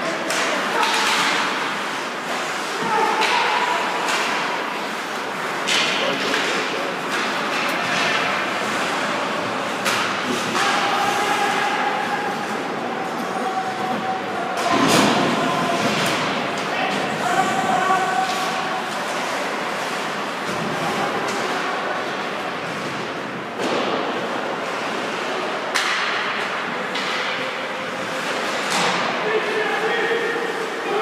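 Ice hockey game heard from rinkside in a large echoing arena: repeated sharp thuds of pucks, sticks and players hitting the boards, with indistinct shouts from players.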